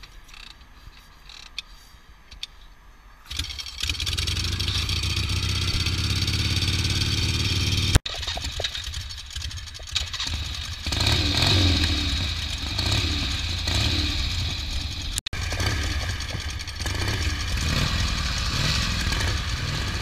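Harley-Davidson V-twin chopper engines starting up. After a few quiet seconds with some clicks, an engine fires about three seconds in and settles to idle. After two abrupt cuts, bikes idle and rev with their pitch rising and falling.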